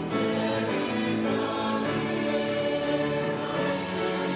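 Mixed-voice youth madrigal choir singing in harmony, holding sustained chords that change every second or so.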